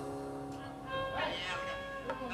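Gambang kromong ensemble in a quiet moment between phrases: held notes fade out, then about a second in a short wavering, sliding melodic line sounds.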